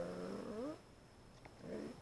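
A man's voice drawing out a long, low 'r' as he spells a word aloud, bending up in pitch and stopping a little under a second in; a single faint click about one and a half seconds in, then a short low murmur near the end.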